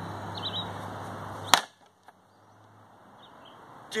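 A frying pan swung down hard onto an old entertainment center, striking once with a loud, sharp crack about a second and a half in that knocks the top shelf loose.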